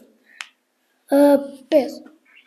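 A single short click about half a second in, then a voice calling out in two short bursts near the end, part of a chanted name.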